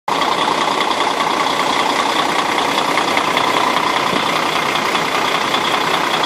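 KamAZ truck's diesel engine idling steadily, heard up close at the front of the cab.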